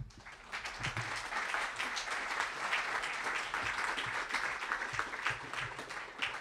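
Audience applauding, the clapping swelling within the first second and holding steady.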